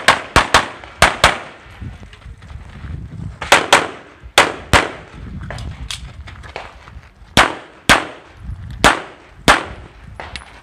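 CZ 75 SP-01 pistol firing rapidly in a USPSA course of fire, about a dozen shots, mostly in quick pairs, with pauses of one to two seconds between groups.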